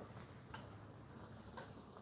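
Near silence: a low steady hum of room tone with two faint ticks about a second apart.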